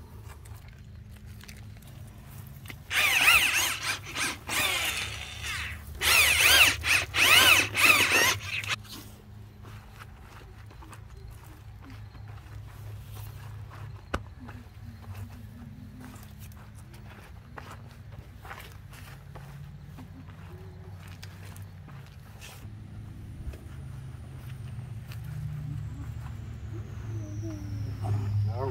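Gloved hands scraping and patting loose, clumpy soil over planted hyacinth bulbs, with small crumbling ticks. About three and six seconds in, two loud bursts of a harsh, wavering whine from an unseen source, each lasting a few seconds.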